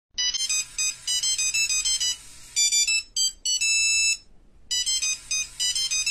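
A high-pitched electronic jingle of quick beeping notes, like a phone ringtone melody. Near the middle it holds one chord, breaks off briefly, then the beeping melody resumes.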